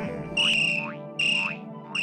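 Cartoon creature calls from the flockers: three short, high, whistle-like chirps repeating less than a second apart over a low steady tone.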